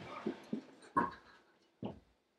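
Several dull thumps of a boy striking a stack of upholstered floor cushions, with a short vocal yelp or grunt about a second in and a last thump near the end.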